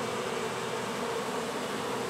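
Steady hum of many honeybees buzzing at a hive entrance, where a crowd of them fans on the landing board as a newly installed colony settles in.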